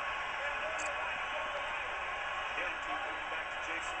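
Football broadcast audio playing from a television speaker: a steady stadium crowd noise with faint, indistinct voices under it.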